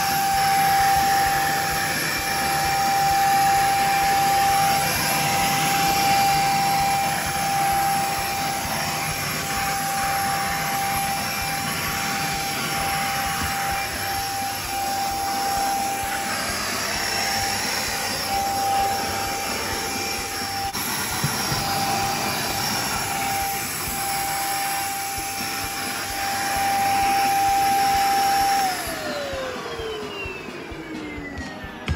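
Beldray corded bagless vacuum cleaner running with a steady motor whine and suction noise that rises and falls a little as the nozzle moves over the floor. Near the end it is switched off and the whine falls away in pitch as the motor winds down.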